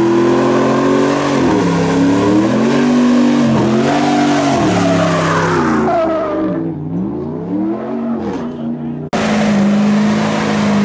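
Pickup truck engine revved hard and repeatedly during a burnout, its pitch swinging up and down about once a second over tyre noise, growing fainter after about six seconds. Near the end it cuts suddenly to another truck's engine running at a steady idle.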